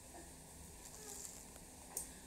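Quiet room tone with a faint steady low hum, and one short click near the end.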